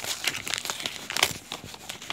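Parcel packaging crinkling and rustling in a series of irregular crackles as it is handled and unwrapped, the loudest crackle about a second and a quarter in.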